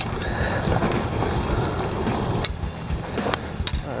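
Steady wind rumble on the microphone, with a series of sharp clicks and knocks from about halfway in as a landing net is handled on the grass.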